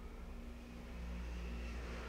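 Faint, steady low rumble of a distant motor with a light hum.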